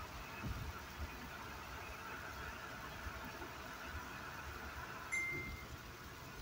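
Steady road and engine noise heard inside a moving car, with one short high electronic beep about five seconds in.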